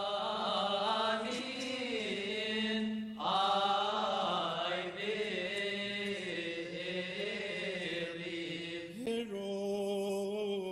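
A priest chanting a Coptic liturgy prayer in long, drawn-out melismatic notes, breaking for breath about three seconds in and again near the end.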